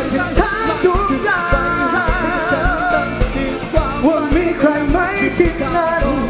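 Live rock band performing: a male vocalist singing over electric guitar, bass and a steady drum beat, with a long note held with vibrato about a second in.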